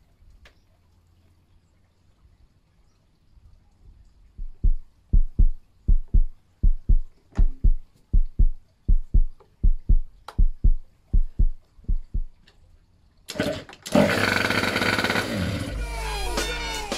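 Yamaha Aerox two-stroke scooter engine being turned over, a run of low, evenly spaced thumps about two a second, then catching and running loudly near the end. This is the test of a newly wired toggle-switch ignition.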